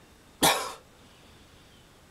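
A man's single short cough, about half a second in.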